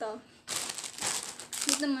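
Packaging crinkling and rustling as it is handled, in a burst of about a second, then a short spoken word near the end.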